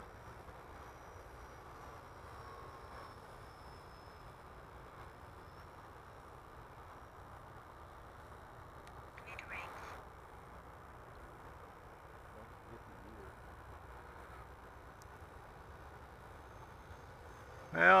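Faint, distant whine and rush of an electric ducted-fan RC jet in flight, a thin high tone that drifts in pitch as the model moves, over a steady low hiss.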